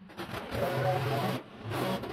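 Small gas engine of a leaf blower starting up and running, its sound dipping for a moment about a second and a half in before picking up again.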